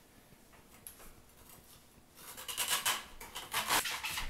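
A Ginsu kitchen knife cutting into the husk of a young coconut. It is nearly silent at first, then, a little past halfway, comes a run of rough scraping, sawing strokes that stops just before the end.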